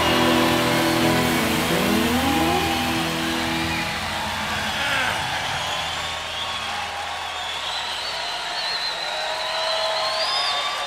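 The last chord of a live guitar-band song ringing out and fading over the first few seconds, followed by a live audience cheering, with high whistles near the end.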